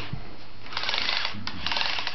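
A battery toy power drill buzzing in two short bursts, the first starting under a second in and the second just after it.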